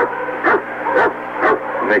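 A dog yipping and whining, with a short call about every half second, heard through an off-air radio recording with a steady low hum beneath it.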